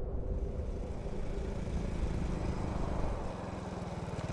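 Motorcycle engine running as the bike approaches, its steady low firing beat becoming distinct in the last second or so.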